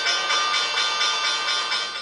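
New York Stock Exchange trading bell ringing continuously as one steady, bright ring that fades a little toward the end.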